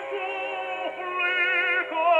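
An operatic tenor singing held notes with a wide vibrato, played from an uncleaned old record on an acoustic horn gramophone through a Columbia No 9 soundbox and an 8-foot papier appliqué horn. The sound has no top end above the upper mids. The note changes about a second in and again near the end.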